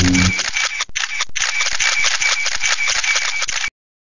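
Logo sound effect: a low tone ends about a third of a second in, then a rapid flurry of camera shutter clicks, paparazzi style, cuts off abruptly near the end.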